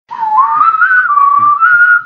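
A person whistling a slow tune loudly, one clear note sliding up and down between pitches.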